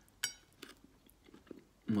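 A mouthful of granola being bitten and chewed: one sharp crunch about a quarter second in, then a few faint chewing crunches.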